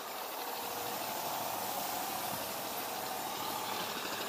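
Compressed-air paint spray gun hissing steadily while spraying paint onto a speaker cabinet's front baffle.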